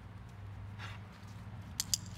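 A dog running up over dry grass and fallen leaves, its footfalls scuffing softly, with two sharp clicks close together near the end, over a steady low hum.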